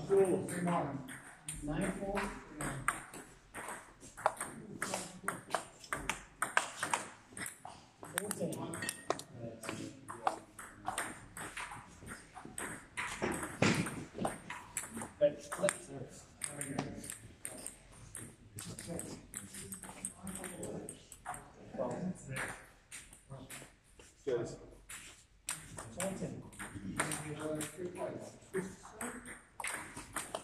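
Table tennis ball clicking repeatedly off bats and table during rallies, with indistinct voices in the background.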